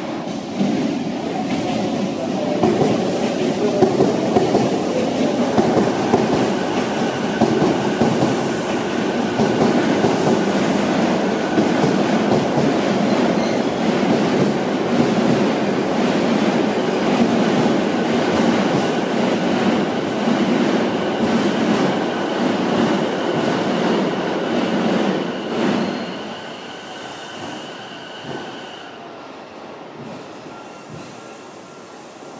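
Sotetsu 12000 series electric train pulling into the platform and slowing: a steady rumble of wheels on rail, joined about six seconds in by a steady high-pitched squeal. The rumble dies down near the end as the train nears a stop, and the squeal fades shortly after.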